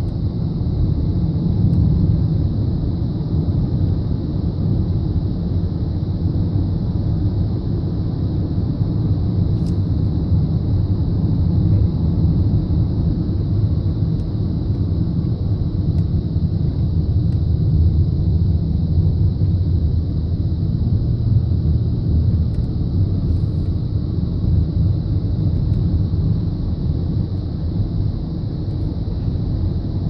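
A car driving on a paved road, heard from inside: a steady low rumble of tyre and engine noise.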